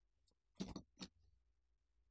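A black instrument case being handled as it is opened: a short clattering scuffle about half a second in, then a single sharp click a moment later.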